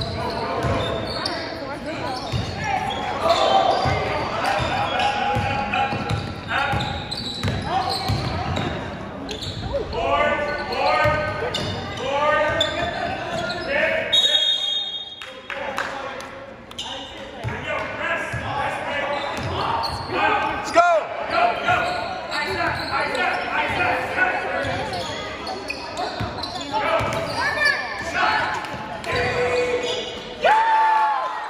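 Basketball game in a reverberant gym: a ball bouncing on the hardwood floor amid the echoing voices of players and spectators. A short, high referee's whistle sounds about halfway through.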